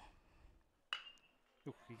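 Metal baseball bat hitting a pitched ball about a second in: one sharp ping with a short ringing tone that dies away quickly.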